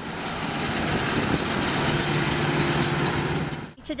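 A John Deere tractor pulling a round baler as it bales hay. The tractor engine's steady drone runs under a broad mechanical rush from the working machinery, and the sound stops abruptly just before the end.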